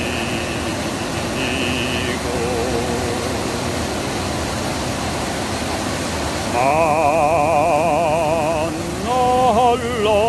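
Korean art song playing: a quieter stretch with faint melody lines, then a melody sung with heavy vibrato coming in about six and a half seconds in. A steady rushing hiss runs underneath throughout.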